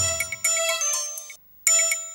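Electronic chime music: bell-like notes ringing over each other. About a second and a half in it cuts out briefly, then starts again.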